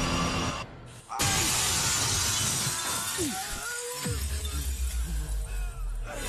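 A large glass pane shattering as a body crashes through it: a sudden loud smash about a second in, right after a brief hush in the score, trailing off over a couple of seconds. It is a film sound effect, mixed with the soundtrack music.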